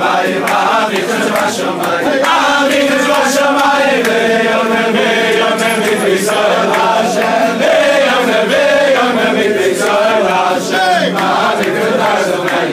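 A group of men singing a Jewish religious song together, loud and unbroken, their voices carrying a wavering melody.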